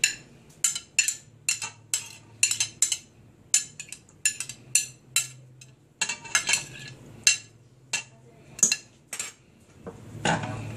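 Irregular sharp clinks, about two a second, of a kitchen utensil tapping and scraping chopped vegetables off a glass dish into a stainless steel mixing bowl.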